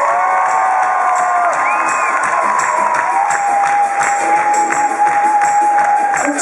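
Live band music with a steady beat and long held notes, over a crowd cheering.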